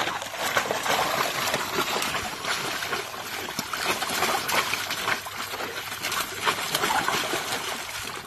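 German Shepherd splashing in a plastic kiddie pool, pawing and snapping at the water in a quick run of splashes, with a garden hose running into the pool.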